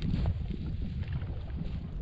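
Wind rumbling and buffeting on the microphone, a low, uneven noise with no steady tone.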